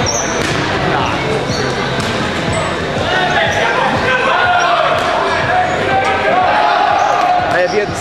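Rubber dodgeballs bouncing and thudding on a hardwood gym floor, with players shouting and calling out over them in a large, echoing gym.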